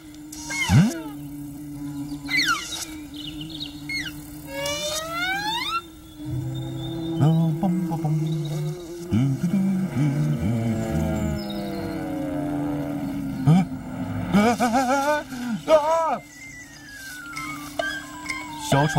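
Comic film-score music full of swooping, sliding whistle-like tones over a steady low drone, with a burst of wavering tones near the end.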